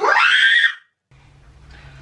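A woman's short, loud squeal that rises steeply in pitch and breaks off after about two thirds of a second. It is followed by a moment of total silence and then faint room tone.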